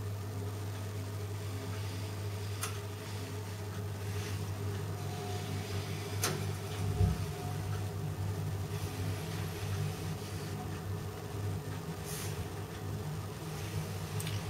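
A steady low mechanical hum, with a few faint clicks and one soft thump about seven seconds in.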